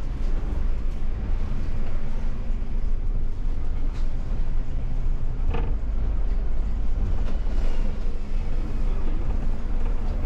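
MAN Lion's City city bus driving, heard from the driver's cab: steady engine and road rumble. A short sharp noise stands out a little past halfway.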